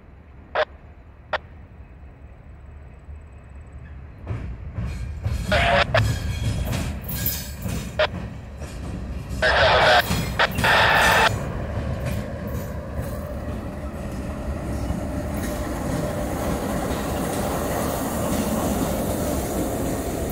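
Norfolk Southern GE Dash 9-40CW diesel locomotives running light, their engine rumble building as they approach and pass close by. A loud sound lasting under two seconds stands out about ten seconds in.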